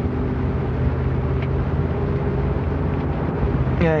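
Steady low rumble of a moving car heard from inside its cabin, with a faint even hum running through it.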